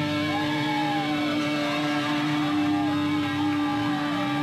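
Electric guitar amplifier ringing out one steady, sustained tone after the band stops playing, with no drums underneath.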